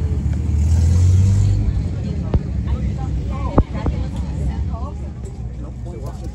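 A loud, low engine rumble, strongest about a second in and then settling to a steady background, with faint voices and a couple of sharp clicks.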